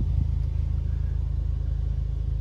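VW Golf R Mk7's turbocharged 2.0-litre four-cylinder engine idling, a steady low rumble heard from inside the cabin.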